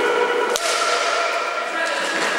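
Ball hockey shot and save: a single sharp crack about half a second in as the ball is shot and stopped by the goalie's glove-side elbow. Under it runs a steady high-pitched squeal that fades near the end.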